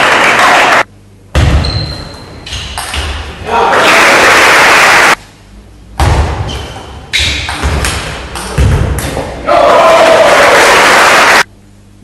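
Table tennis play: sharp ticks of the celluloid ball off rackets and table during the rallies. After points come three loud stretches of spectators clapping and cheering, each stopping abruptly.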